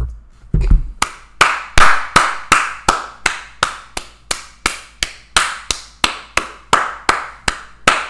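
One man clapping his hands in a steady, even rhythm, about three claps a second, starting about a second in.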